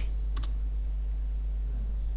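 A single keystroke on a computer keyboard about half a second in, over a steady low hum.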